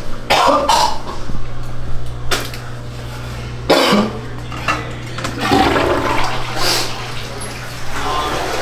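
Toilet flushing in a small bathroom, among several short sharp noises, over a steady low hum.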